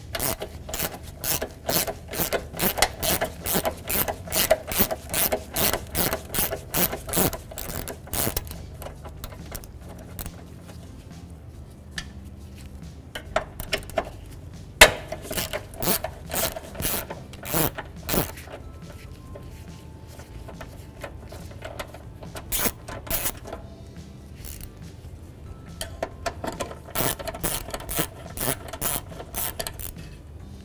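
Hand ratchet with a socket extension clicking as it turns out the 10 mm bolts holding the hood latch. The clicks come in runs of about three a second, with the longest run in the first eight seconds and shorter runs later, separated by pauses.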